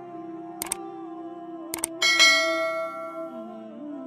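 Subscribe-button animation sound effects: two quick double clicks like a mouse button, then a bell ding about two seconds in that rings out and fades. Soft, steady background music plays underneath.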